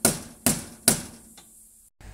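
Three sharp knocks about half a second apart as a tool strikes the metal roof rack of a pickup, each with a short ringing tail, then a fainter tap; the sound cuts off abruptly near the end.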